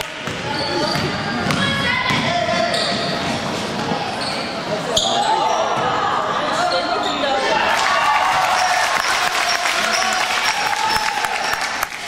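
Basketball game on a gym's hardwood court: the ball is dribbled and bounced while players and spectators shout over one another, with short sneaker squeaks. The shouting grows stronger about halfway through.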